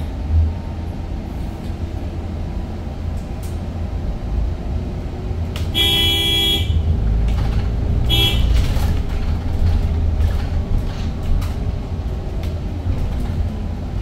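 Steady low rumble of ride noise inside a moving Edison Motors Smart 093 electric bus. A vehicle horn sounds about six seconds in for just under a second, then gives a shorter toot about two seconds later.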